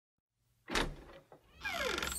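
Logo-reveal sound effects: a whoosh about two-thirds of a second in that fades away, then a second swelling whoosh near the end with several tones sliding steeply downward.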